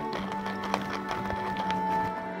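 Wooden salt mill twisted by hand, grinding salt with a run of small dry clicks, one sharper than the rest a little before the middle. Soft background music with steady held notes plays under it.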